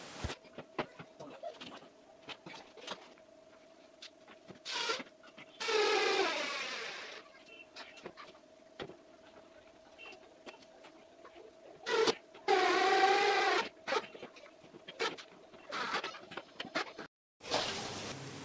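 Cordless electric screwdriver driving screws into plywood: two short whirring runs of about a second and a half each, the first dropping in pitch as the screw seats. Between them come small clicks and knocks of the driver and screws being handled.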